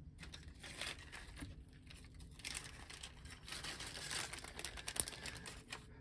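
Small clear plastic parts bag crinkling and rustling softly as it is handled, irregular, with a sharper rustle about five seconds in.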